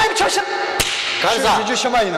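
A single sharp hand clap about a second in, the challenger's clap that punctuates a point in Tibetan monastic debate, with men's voices speaking in Tibetan around it.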